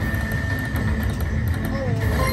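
Video slot machine running a free-spin round, its reels spinning and stopping under a steady electronic tone, over background voices on a casino floor.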